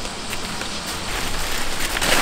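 Blue plastic tarp rustling and crinkling as it is stepped on and pulled open, getting louder near the end.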